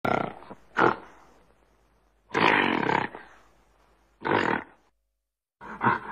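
Gorilla vocalizing: four rough calls, the third the longest at nearly a second, separated by short silences.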